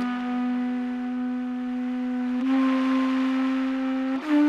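A wind instrument playing a slow folk air, holding one long note and then moving up a step to a second long note about two and a half seconds in, with a light breathy hiss.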